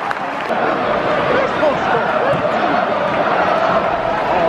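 Football crowd in the stands, many voices chanting and shouting together, celebrating a home goal.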